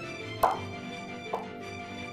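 Chef's knife slicing through roasted güero chiles and knocking on a wooden cutting board: two cuts about a second apart, the first louder. Background music plays underneath.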